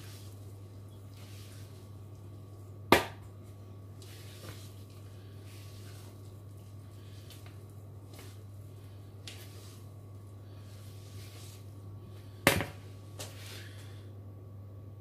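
Spatula scraping and folding thick cake batter with grated chocolate in a plastic mixing bowl, in soft repeated strokes, with two sharp knocks of the spatula against the bowl, about three seconds in and near the end. A steady low hum runs underneath.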